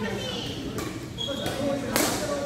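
Badminton rally: sharp racket-on-shuttlecock hits, the loudest just before the end as a player jumps into a smash, echoing in the hall.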